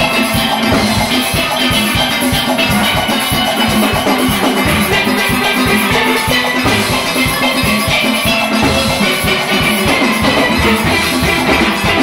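Full steel orchestra playing live: many chrome steelpans struck with rubber-tipped sticks all at once over a steady, driving beat, loud and continuous.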